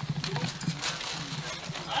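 Irregular crinkles and clicks of wrapping paper and gift boxes being handled, over a steady low hum.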